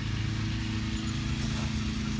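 Lawn mower engine running steadily, a low even drone with no change in speed.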